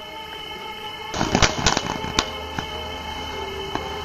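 A ground fountain firework bursting into its spray about a second in, with a cluster of crackles and then a few single pops, over steady background music.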